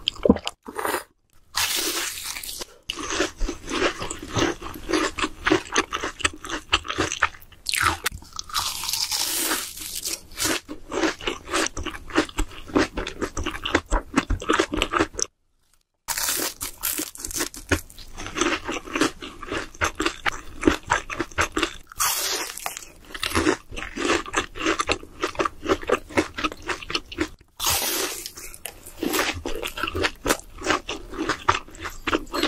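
Close-miked eating: dense, irregular crunching and chewing of deep-fried breaded food, with a short break about halfway through.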